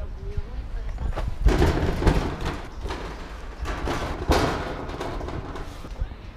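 Dull thumps and two long rustling scrapes, about a second and a half in and again about four seconds in, as a person climbs up onto a steel construction-site hoarding.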